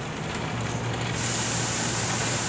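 Street traffic noise: a large vehicle's engine running with a steady low hum, joined about a second in by a steady hiss.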